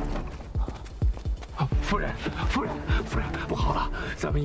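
Horse hooves thudding unevenly on a dirt road as a horse-drawn carriage is led to a halt, over a dramatic background score. A man's urgent voice comes in near the end.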